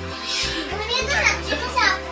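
Background music with held bass notes, and over it a young child's high voice calling out from about half a second in, loudest near the end.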